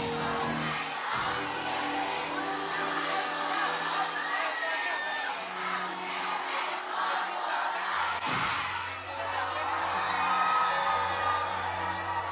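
Live amplified band music with held chords and bass, and a crowd cheering and whooping over it. A short falling sweep comes about eight seconds in.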